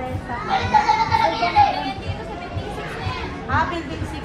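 Women talking in Filipino, with children's voices around them, over background music with a steady low beat of about three pulses a second.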